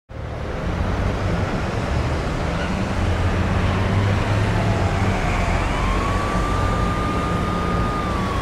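City street traffic noise with a steady low rumble. A siren sounds over it, its pitch sinking, then rising about halfway through and holding steady.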